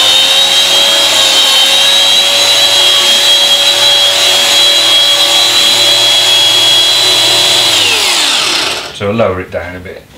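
Electric carpet shearing machine running with a steady high whine as it is pushed across a carpet's pile. About eight seconds in the motor is switched off and winds down, its pitch falling away.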